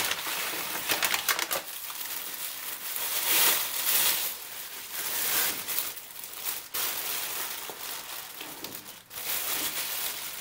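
Packing material crinkling and rustling as a package is unwrapped by hand, in uneven surges with no pauses.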